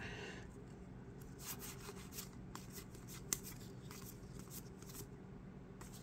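A stack of Topps baseball cards being thumbed through in the hands, each card sliding off the next: faint, scattered soft clicks and rubs of card stock, with one sharper tick about three seconds in.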